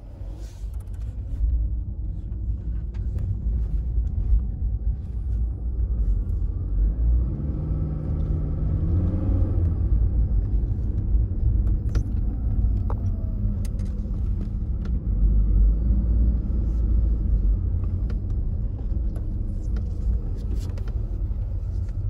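Car engine running with a low rumble as the accelerator is pressed, its pitch climbing for a couple of seconds about seven seconds in.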